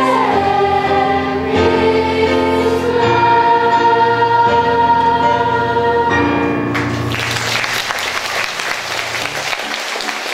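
A large cast of young singers holding the long final chord of a song, with the note changing a few times and then cutting off about seven seconds in, after which audience applause takes over.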